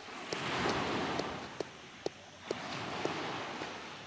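A hand-held rock knocking against a crusted coin concretion on a flat stone, several sharp knocks as the lump is broken open, over a steady wash of surf and wind noise.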